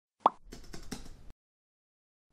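An intro sound effect: one short pop, then a faint, quick run of keyboard-typing clicks lasting under a second.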